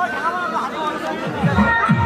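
Voices and chatter from the players and crowd. About one and a half seconds in, a regular low drum beat of background music starts.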